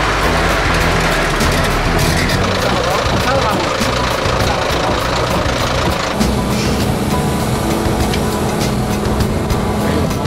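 Heavy diesel machinery engine running steadily, with people talking indistinctly and music in the background.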